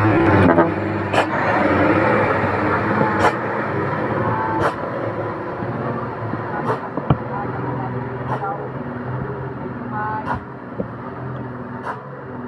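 Tanker truck's diesel engine passing close and pulling away up the road, its sound fading steadily, with a few sharp clicks.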